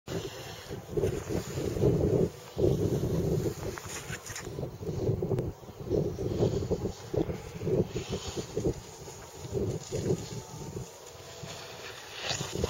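Wind buffeting the camera's microphone, a low rumble that gusts up and down unevenly.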